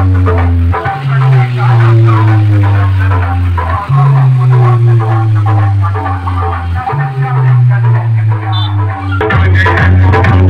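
Dance music played very loud through a road-show DJ sound system pushed for heavy bass: long booming bass notes of about three seconds each, a tone sliding downward over each one, then a busier drum beat coming in about nine seconds in.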